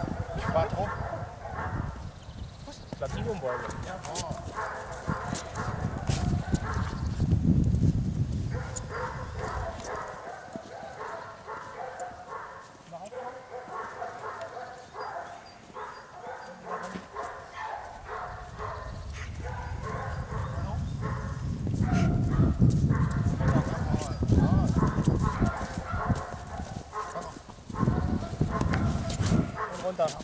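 A dog vocalising almost without pause, high whining and yelping in quick repeated bursts, fading for a stretch in the middle. Wind rumbles on the microphone in swells.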